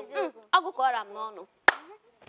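One sharp clap about three-quarters of the way through, after a woman's short spoken phrases.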